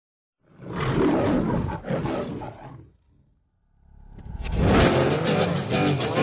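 An intro sound effect: a rough, noisy sound in two surges lasting about two and a half seconds, cut off abruptly, then a short silence. Music with a steady fast beat fades in from about four seconds.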